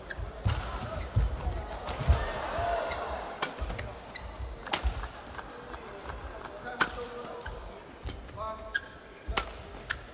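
Badminton rally: sharp racket strikes on a shuttlecock, one every second or two, with dull thuds of players' footwork on the court between them.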